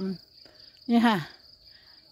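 A steady, high-pitched insect trill runs the whole time, with a woman's short spoken phrase about a second in.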